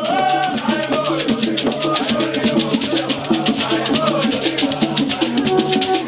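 Traditional Nso dance music: a fast, even rattle and drum beat under held, shifting melodic lines of singing voices.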